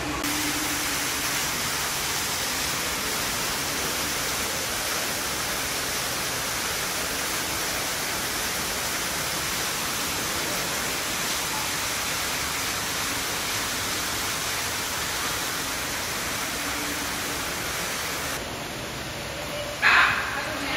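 A steady, even rushing hiss with no pattern in it, stopping suddenly near the end, followed by a short loud sound right at the close.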